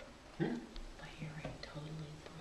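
A person's voice speaking softly, starting about half a second in; the words are not made out.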